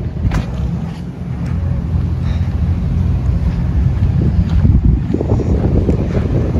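Wind buffeting a handheld phone microphone, a heavy uneven rumble that grows stronger in the second half.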